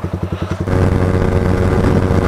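Yamaha R15 single-cylinder motorcycle engines idling with an even beat, then, after about two thirds of a second, an abrupt change to a motorcycle at high speed (about 137 km/h on the dash): a steady, louder engine drone with wind rush.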